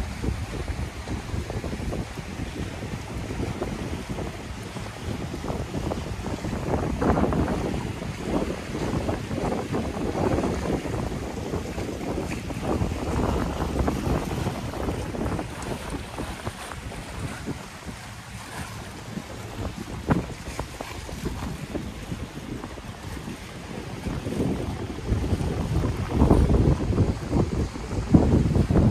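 Strong wind buffeting the microphone in gusts, over the wash of choppy, whitecapped bay water. The gusts swell about seven seconds in and again near the end.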